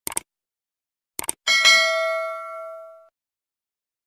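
Subscribe-button sound effect: two quick clicks, two more about a second later, then a bright bell ding that rings out and fades over about a second and a half.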